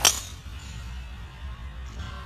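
A driver's clubhead striking a golf ball off the tee: one sharp, bright crack at the very start, fading quickly, over a low steady rumble.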